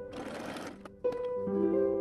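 Light plucked-string background music, with a domestic sewing machine running a short stretch of stitching for under a second at the start.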